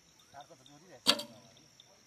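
Samick recurve bow shot: the string snaps forward on release with a single sharp crack about a second in, followed by a short ringing of the string and limbs.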